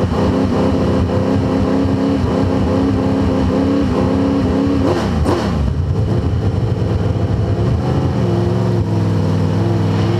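Two-seater late model race car's V8 engine heard from inside the cockpit, running at high revs for about five seconds, then the revs fall sharply and it carries on at lower revs with small rises.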